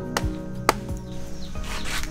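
Two sharp woody knocks about half a second apart as a cacao pod is cracked open by hand, over steady background music.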